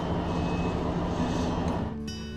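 A vehicle engine idling steadily: a constant low hum under a steady wash of background noise.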